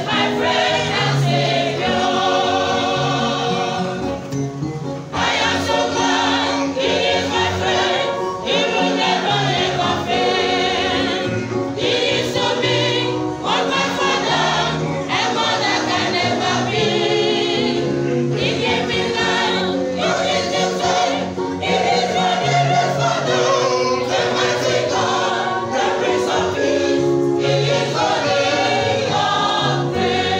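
Church choir singing a gospel song together, many voices sounding at once without a pause.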